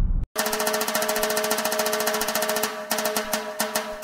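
Music track: a rapid drum roll over a held chord, starting just after a brief cut. It thins to separate drum hits in the last second or so.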